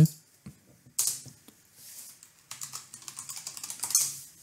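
Computer keyboard keys clicking: a press about a second in, then a quick run of keystrokes through the last second and a half as a password is typed at a sudo prompt.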